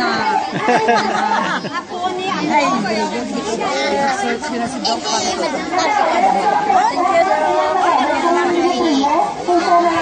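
A crowd of people chattering, many voices talking and calling out over one another with no one voice standing out.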